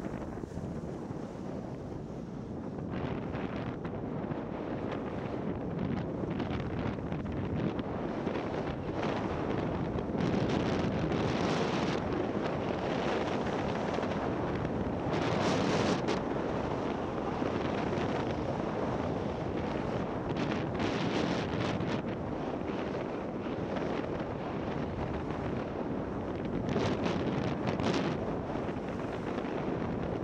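Wind rushing over the microphone of a skier-carried 360 camera during a downhill ski run, mixed with the hiss of skis sliding on snow. It grows louder about ten seconds in, with brief sharper scrapes now and then.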